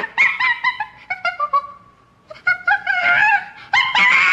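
Monkey chattering: a quick run of short, high-pitched calls at about five a second, a brief pause about halfway, then more calls with a longer wavering screech near the end.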